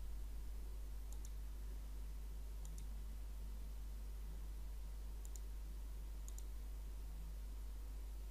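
Computer mouse button clicked four times, each click a quick double tick, a second or two apart, over a low steady hum.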